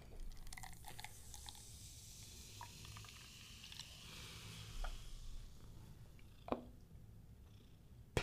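Carbonated energy drink poured from an aluminium can into a drinking glass: a faint, steady fizzing hiss with small crackles that lasts about five seconds. A single light knock follows near the end.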